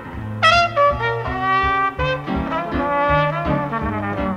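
Jazz duet of a trumpet-family brass horn and piano: the horn plays a melody of held and moving notes over piano chords and bass notes.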